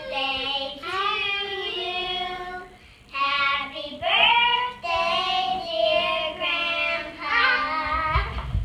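Young children singing together, unaccompanied, in short sung phrases with held notes and a brief break about three seconds in.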